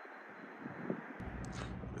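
Faint outdoor ambience with a steady hiss. About a second in, a low wind rumble on the phone microphone comes in, with a few faint clicks.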